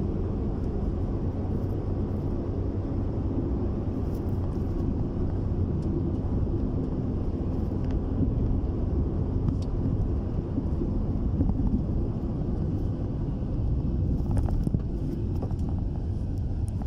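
Steady low rumble of a moving vehicle's engine and road noise.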